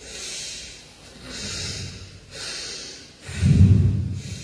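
Pranayama breathing: forceful breaths hissing through one nostril while the other is held shut by hand, three of them about a second apart. Near the end comes a louder, deeper breath blowing onto the close microphone.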